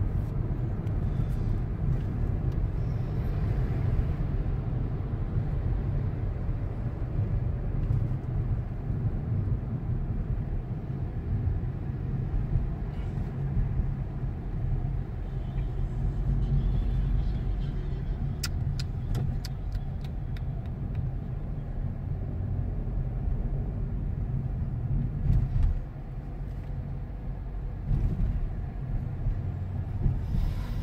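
Car interior while driving: a steady low rumble of engine and road noise, with a short run of light clicks about two-thirds of the way through.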